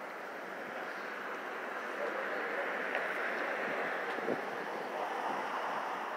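Street traffic noise: a steady hiss of passing traffic that swells gently through the middle and eases off, as if a vehicle goes by.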